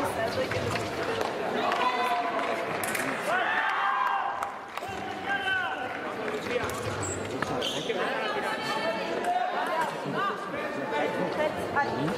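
Indistinct voices echoing in a large sports hall, with scattered knocks and clicks.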